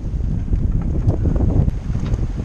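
Wind buffeting the microphone aboard a sailboat under sail, a steady low rumble with no distinct events.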